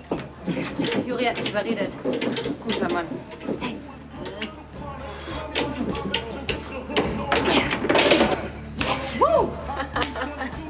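Table football game: the ball and players knocking and clacking in quick irregular hits, over background music and voices.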